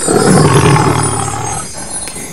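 A lion-roar sound effect: one long, low roar that fades away over about a second and a half.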